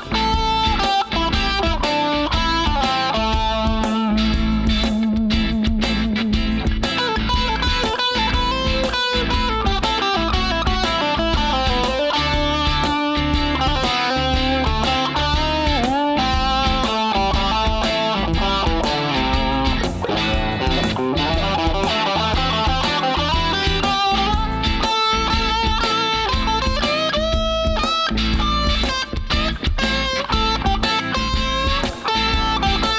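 Electric guitar improvising a single-note lead with string bends over a looped backing track of bass line and chords.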